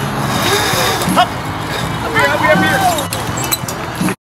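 Voices calling out twice without clear words, over a steady low background hum.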